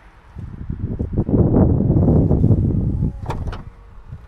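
Powered tailgate of a Škoda Karoq closing after its close button is pressed: a loud, noisy stretch for about three seconds, then a few sharp clicks as it latches shut.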